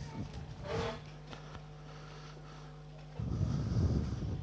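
Faint steady hum, then from about three seconds in a louder low rumble of hoofbeats as a racehorse gallops past on the dirt track.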